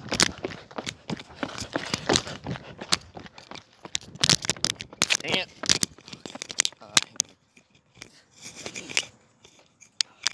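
Handling noise from a phone carried by someone on the move: irregular knocks and rustling of the microphone against clothing, mixed with footsteps, with a brief voice-like sound about five seconds in. The knocks thin out after about seven seconds.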